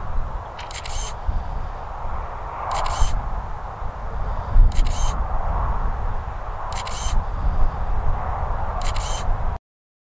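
A camera-shutter click sound repeating every two seconds, five times: the shutter sound played by the phone's drone app each time the Mavic 2 Zoom takes a hyperlapse photo. Wind rumbles on the microphone underneath, and the sound cuts off abruptly just before the end.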